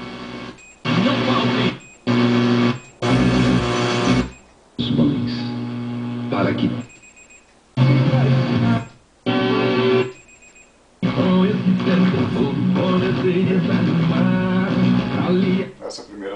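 Radio broadcasts from the Gradiente R-343 receiver's tuner, heard over the speakers as it steps from station to station: about seven short snatches of music and talk, each cut off by a brief silence before the next, the last one playing for about five seconds.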